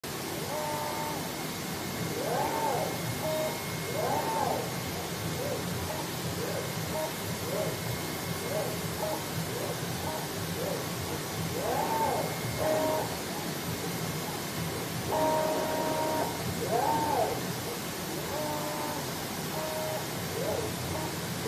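A CNC digital box-cutting machine at work: its drive motors whine, rising and falling in pitch with each move of the cutting head, over a steady hiss.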